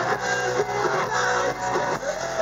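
Hard rock band playing live: electric guitars over a steady drum beat, without vocals.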